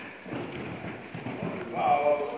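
A horse's hoofbeats on soft sand arena footing as it lands from a jump and canters away: irregular dull thuds. A voice starts near the end.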